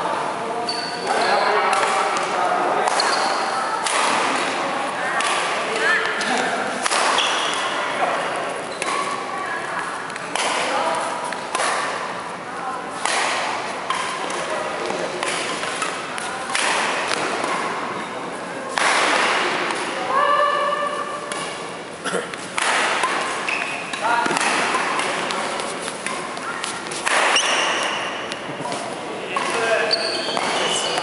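Badminton doubles rally: rackets striking the shuttlecock with sharp pings, and players' shoes thudding and squeaking on the wooden court, repeated throughout, with players' voices between shots.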